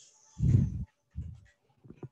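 Muffled low rumbles, two short ones starting about half a second in and a fainter one near the end, as a person shifts from one side plank onto the other side.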